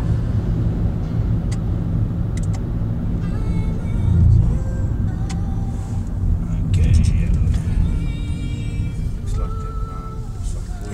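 Steady low rumble of a car's engine and tyres heard from inside the cabin while driving, swelling briefly around four and seven seconds in.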